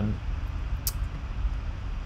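Steady low background rumble, with one short sharp click a little under a second in: a computer pointer click opening the audio menu.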